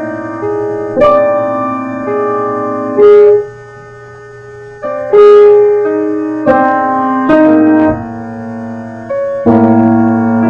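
Solo piano playing slow, separate notes and chords, each struck and left to fade, with a quieter lull of about a second and a half near the middle.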